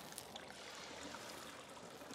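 Wort draining out of a lifted mesh bag of spent grain back into a stainless steel brew kettle: a faint, steady trickle.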